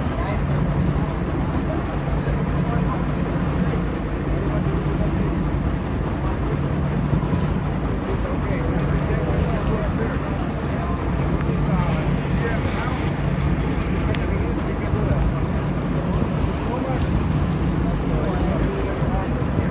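Fishing boat's engine running steadily under way, a constant low drone, with water rushing along the hull and wind on the microphone.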